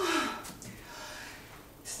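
A woman's breathy gasp with a voice that falls in pitch over about half a second, followed by a softer breath.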